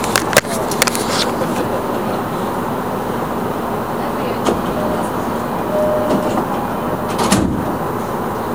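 Steady running noise inside a moving commuter train carriage. There are a few sharp knocks in the first second from the camera being handled.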